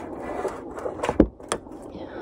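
Low steady rumbling noise with two sharp knocks, the first and louder a little past a second in, the second shortly after.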